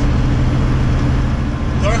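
Semi-truck cab at highway speed: the steady low drone of the truck's diesel engine with road noise.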